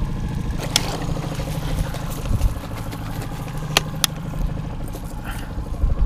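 A boat's outboard motor running steadily at trolling speed, with a few sharp clicks or knocks from handling in the boat, one about a second in and two close together near four seconds.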